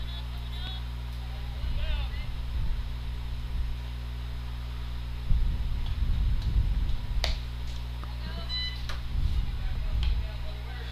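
Ambient sound of an outdoor softball game: a steady low hum, rumbling gusts of wind on the microphone, and distant shouts from players and fans. A single sharp pop comes about seven seconds in, as a pitch reaches the plate.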